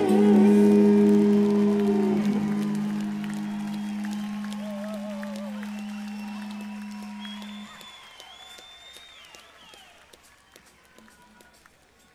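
A rock band's song ending live: a held sung note with vibrato ends about two seconds in, and a low sustained chord rings on until it stops abruptly about eight seconds in. Scattered audience applause and whistles follow, and the whole recording fades away to near silence by the end.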